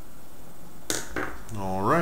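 Only speech: a man's voice begins about a second in, after a short lull of room tone.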